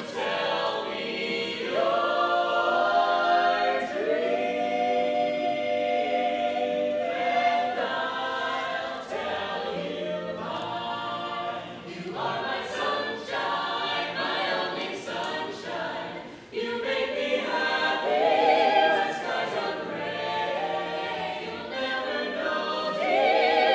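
A cappella vocal ensemble of mixed men's and women's voices singing in close harmony, holding sustained chords that change every second or two, in a reverberant domed rotunda.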